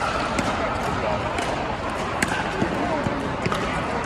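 Irregular sharp pops of pickleball paddles hitting the plastic ball and the ball bouncing on court, about five in four seconds, in a large indoor hall over a murmur of voices.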